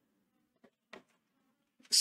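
Chalk strokes on a chalkboard: two short, faint scratches about a second in while letters are written, over a faint low hum.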